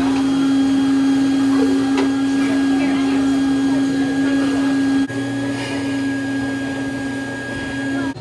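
Plush-toy stuffing machine running, its blower churning fiberfill inside the drum with a loud, steady hum at one pitch. The level dips slightly about five seconds in.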